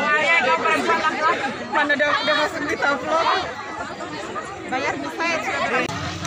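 People talking over one another: overlapping voices in casual chatter, with no other sound standing out.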